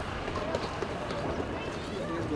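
Indistinct voices of several people talking in the background, no clear words, with scattered light clicks over a steady low rumble.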